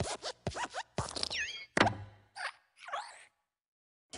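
Cartoon sound effects for the Pixar hopping desk lamp: quick springy squeaks and hops, with a thump about two seconds in as it stomps flat the letter I, the loudest sound. A few more squeaky glides follow, then it stops short.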